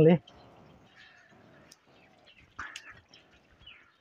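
A voice ends right at the start, then faint outdoor background with a few short, distant animal calls.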